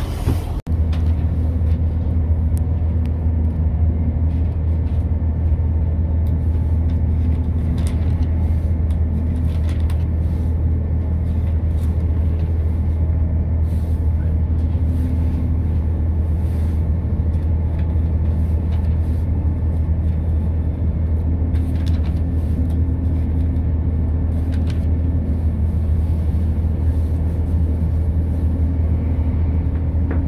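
Class 170 Turbostar diesel multiple unit heard from inside the carriage as it pulls away and runs: the underfloor diesel engine drones steadily under power, with a deep hum and the running noise of the train.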